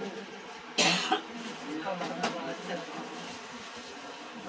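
A single sharp cough about a second in, over faint murmur of voices.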